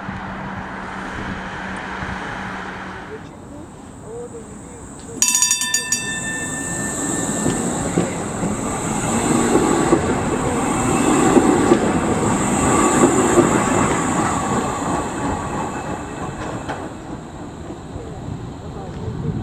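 A tram's bell rings briefly, then the tram passes close by, its running noise swelling and fading as it moves off.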